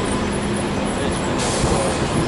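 City transit bus driving past on the street, its engine a steady drone, with a hiss joining in about one and a half seconds in.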